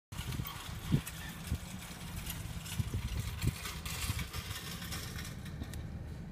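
Steady low rumble of a car cabin, with a few soft thumps, the loudest about a second in.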